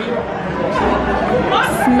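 Background chatter of many diners' voices overlapping in a busy restaurant dining room.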